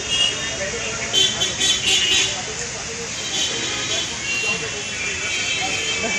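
Busy street sound as a crowd gathers: people's voices over traffic noise, with a cluster of short high-pitched tones, like vehicle horn toots, between about one and two seconds in.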